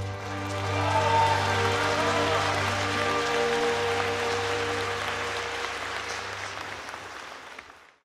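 Audience applauding over the song's final chord as it rings away. It all fades out near the end.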